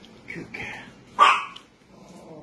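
A greyhound gives one loud bark just over a second in, after two shorter, softer sounds.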